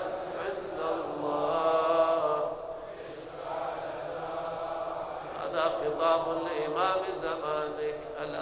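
A man's voice chanting a Shia supplication in long, drawn-out melodic phrases with held notes.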